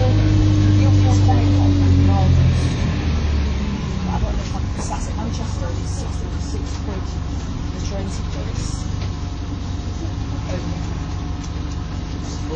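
MAN 18.240 single-decker bus's six-cylinder diesel heard from inside the passenger saloon, with a steady drone at first. About three seconds in, the engine note drops away and goes quieter, leaving a low road rumble with small rattles from the bodywork.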